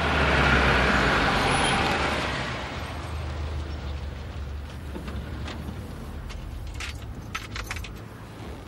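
Lada saloon car driving by, its engine and tyre noise loudest for the first two seconds and then fading away. A low engine hum carries on, with a few light clicks near the end.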